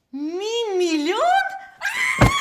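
A woman's drawn-out whining cry: one wavering note that rises sharply in pitch near its end, lasting about a second and a half.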